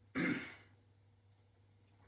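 A man clears his throat once, briefly, just after the start.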